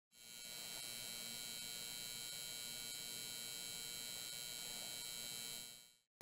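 Faint, steady electrical hum with a high-pitched whine over it, fading in just after the start and fading out just before the end.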